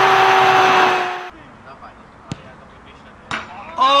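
A loud rushing whoosh with a steady held tone, an intro sound effect, cuts off suddenly about a second in. Then comes quiet open-air ambience with a single sharp thud a second later, and a man's shout begins right at the end.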